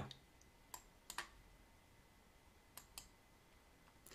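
Faint computer mouse clicks against near silence, about five in all, some in quick pairs.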